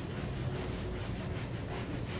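Whiteboard eraser rubbing back and forth across the board, a dry, quiet scrubbing.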